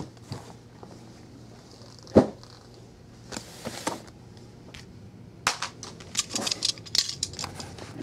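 Sealed cardboard hockey card boxes being handled and set down on a tabletop: a single knock about two seconds in, a brief rustle, then a quick run of taps and clicks near the end.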